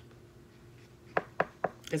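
Three quick, sharp taps about a quarter second apart as an oracle card and its guidebook are handled.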